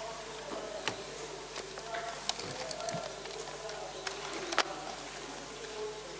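Room tone of a hall between speakers: faint, indistinct voices and a low background, with scattered sharp clicks and knocks, the loudest a little past halfway.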